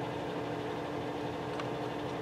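Steady low mechanical hum of room noise, with a faint click about one and a half seconds in.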